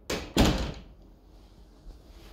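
A closet door being shut: a short sharp click, then a heavier thump about half a second in that dies away quickly.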